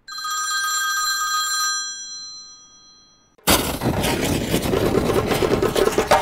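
A bright, bell-like chime sound effect rings out and fades away over about three seconds. About three and a half seconds in, a loud, steady rushing noise cuts in.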